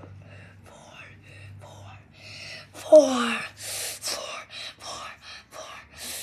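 A person's voice making non-word sounds: soft breathy noises over a low hum, then about three seconds in a loud falling wail, followed by a run of short breathy gasps.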